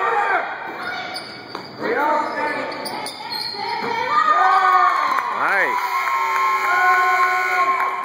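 Basketball bouncing on a gym's wooden floor, then spectators yelling and cheering as a shot goes up, ending in a long steady held tone over the last two seconds.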